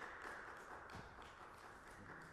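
Scattered applause from a small audience, thinning out and fading away.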